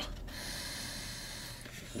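A man breathing in long and steadily through his nose, smelling food held up close to his face.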